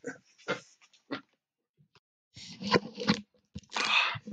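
A dog chewing on a book: a few sharp, irregular crunches, then denser chewing and crunching through the second half. A headset being handled against the microphone adds a burst of rustling near the end.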